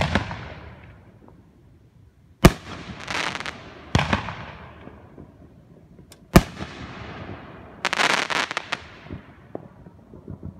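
Aerial fireworks going off: four sharp bangs of shells bursting over the ten seconds, each trailing off in echo. Two rapid runs of crackling follow, a couple of seconds after the second bang and again near the end.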